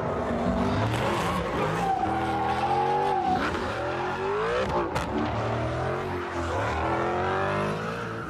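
Supercharged V8 of a Dodge Challenger SRT Demon revving hard through a burnout, rear tyres squealing as they spin in smoke. The engine note rises and falls several times, with a long held squeal about two seconds in.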